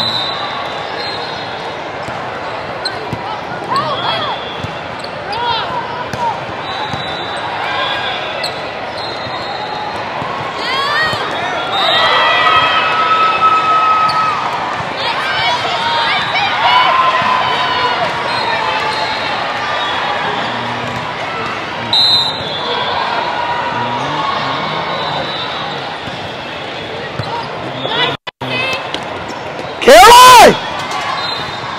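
Indoor volleyball rally in a large, echoing hall: balls bouncing and being struck, sneakers squeaking on the sport court, and players' voices over a steady crowd hum. A sudden loud sound comes right at the end.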